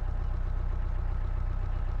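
2004 Mahindra Bolero's 2.5-litre diesel engine idling steadily with a fast, even throb, heard from inside the cabin.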